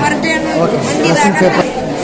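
Indistinct talking with several voices overlapping, echoing in a large hall.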